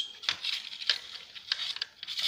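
Scouring sponge scrubbing inside the opened housing of an old bench sander: a dry rasping rub with a few light clicks as it knocks against the metal frame and motor parts.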